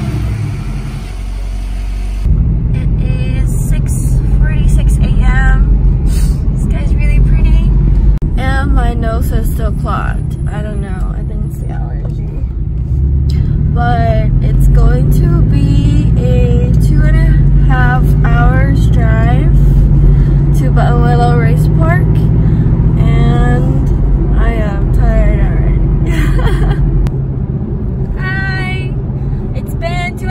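Porsche 718 Cayman engine and road noise heard inside the cabin while driving, a steady low rumble that sets in strongly about two seconds in and grows heavier midway. A voice and music play over it throughout.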